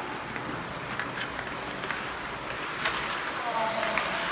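Live ice hockey play in an echoing rink: skates scraping the ice and several sharp clicks of sticks on the puck, with indistinct voices calling in the background.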